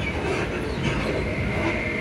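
ScotRail Class 334 electric multiple unit running, heard from inside the carriage: steady running noise with a thin whine from its Alstom Onix traction motors, clearer near the end.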